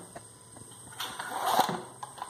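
A steel machete blade being pushed into a canvas sheath: a short scraping rustle about a second in. The sheath has shrunk with age, so the blade will not go all the way in.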